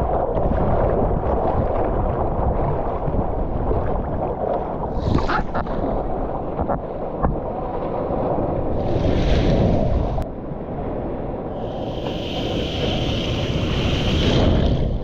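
Ocean water sloshing and surf breaking close to a camera at the water's surface, with wind on the microphone. A few brief splashes come through, and there is a brighter hiss of moving water near the end.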